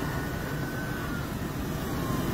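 Steady road traffic noise from vehicles on a busy highway interchange, with a faint thin tone slowly falling in pitch.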